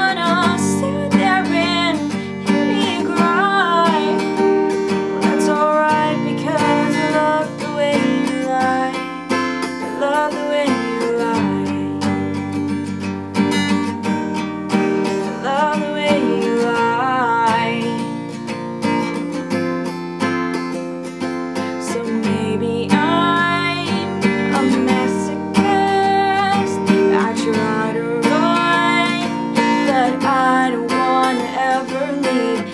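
Acoustic guitar strummed as steady accompaniment while a young woman sings over it.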